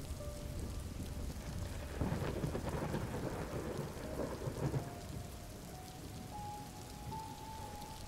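Steady rain falling, with a low rumble of thunder that swells about two seconds in and fades again by about five seconds.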